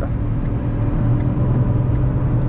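Ford Ka's 1.0-litre three-cylinder engine pulling under full throttle in fourth gear at about 120 km/h, heard from inside the cabin as a steady drone mixed with road and wind noise.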